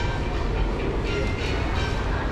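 Steady low rumble of busy indoor public-space ambience, with faint background voices.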